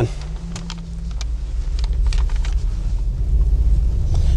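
Mercedes-AMG C63 S coupe's 4.0-litre twin-turbo V8 and road noise heard from inside the cabin as the car pulls away, a low rumble that builds gradually, with a few faint ticks.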